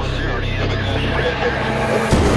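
Low sustained drone from the trailer's soundtrack, with a steady hiss above it. The drone cuts off abruptly just before the end.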